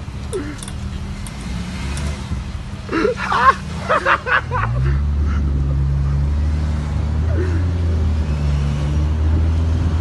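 Car engine speeding up about halfway through, then running steadily as the car drives, heard from the car the video is shot from. A few brief voices come just before the engine picks up.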